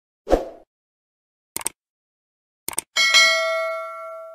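Subscribe-button animation sound effects: a short pop as the button appears, two quick mouse clicks about a second apart, then a bright notification-bell ding that rings out and fades over about a second and a half.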